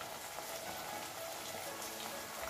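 Leafy-greens sambar simmering in a steel kadai on a gas stove: a faint, steady fine crackle of bubbling and sizzling.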